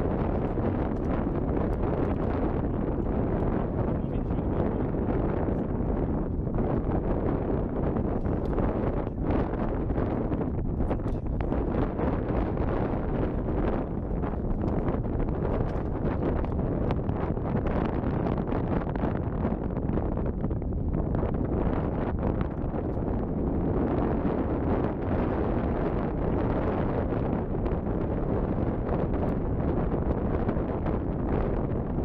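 Wind buffeting the action camera's microphone: a steady, dense rumble that covers everything else.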